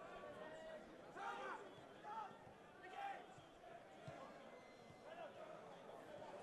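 Faint football-ground ambience: a low steady hiss with a few short, distant shouts about one, two and three seconds in, and a soft thud a little after four seconds.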